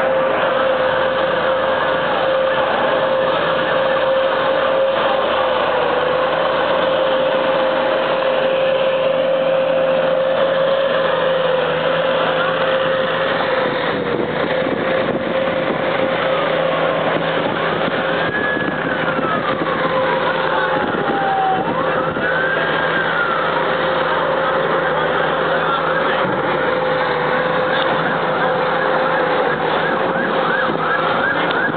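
Police car sirens wailing as they pass. About two-thirds of the way in the pitch sweeps down and back up. Underneath is steady street noise with a constant hum.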